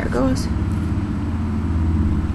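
A loud, steady low drone of a running motor with a fast even pulse, starting abruptly just before and carrying on throughout.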